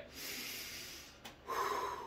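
A man breathing out audibly through the nose for about a second, then a small mouth click and a short, low voiced hum near the end.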